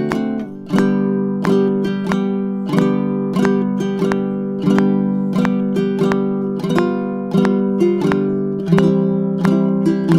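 Baritone ukulele strummed in three-four waltz time, a chord stroke about every two-thirds of a second with a stronger stroke opening each bar. The chords change every bar or two as the tune goes on.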